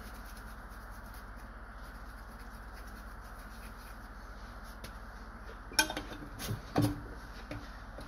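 Soft rubbing of a cloth wiping solder pads on a circuit board clean, over a steady low background hum. A few light knocks come near the end, about six and seven seconds in.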